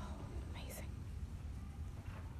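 Quiet theatre room noise, a steady low rumble, with a brief whisper from the audience about half a second in.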